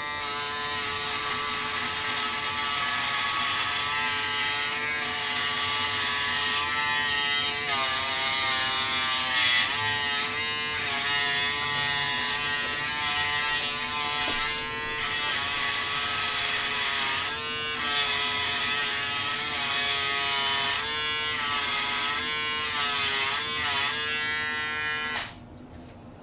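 Braun Series 5 5018s foil electric shaver running against the neck and jaw, cutting stubble: a steady buzzing hum whose pitch dips now and then as the head is pushed hard into the skin against its springy head. It switches off shortly before the end.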